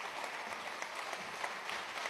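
A roomful of legislators applauding: many hands clapping in a steady, even spread of claps, heard at a moderate level.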